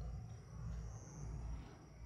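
Outdoor night ambience: an uneven low rumble that swells and fades, like wind buffeting the microphone, with a faint steady high-pitched whine.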